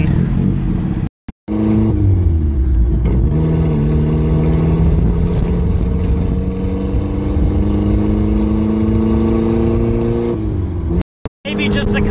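Turbocharged Mazda Miata inline-four with a straight-pipe exhaust, heard from inside the cabin while driving. The revs fall about two seconds in, then climb steadily under acceleration for about seven seconds before falling away near the end.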